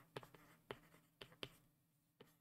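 Faint, sharp taps of a stylus on a tablet screen as a word is written out in capital letters, a quick uneven run of clicks that stops about a second and a half in.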